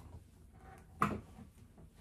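Faint handling noise of an electric guitar being moved, with one short wooden knock about a second in.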